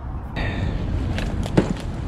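Rustling and handling noise as a backpack is set down on a concrete ledge, with a short knock a little past halfway. A low rumble runs underneath.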